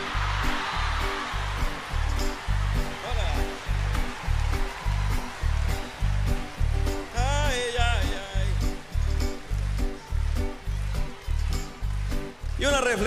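Live band vamping with a steady bass beat while the concert crowd laughs and cheers for the first few seconds after a joke. A brief voice rises over the music about seven seconds in.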